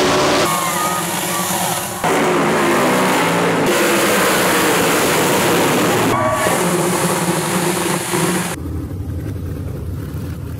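Winged sprint car V8 engines at racing speed on a dirt track, revving and passing in a run of quick edited cuts, the pitch rising and falling with the throttle. Near the end the sound changes to a deep low rumble with the treble gone.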